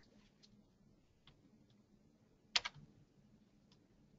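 Quiet pause with a sharp double click about two and a half seconds in and a few faint ticks around it: a computer click that advances the presentation slide.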